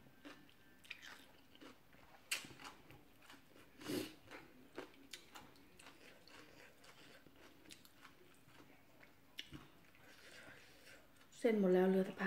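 Chewing and slurping of rice noodles, with scattered light clicks of a metal fork and spoon against a glass bowl. Near the end comes a short loud voiced sound from the eater.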